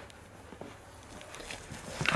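Faint rustling with a few soft clicks as a dog mouths and tugs a plush toy on carpet.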